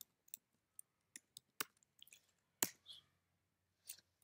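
Faint, irregular clicking at a computer: about a dozen light clicks, one sharper than the rest a little past halfway.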